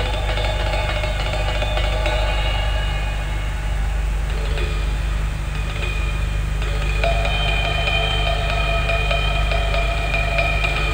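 Jazz drum kit played fast and continuously, with dense, even stick strokes and cymbals ringing. A steady low hum runs underneath.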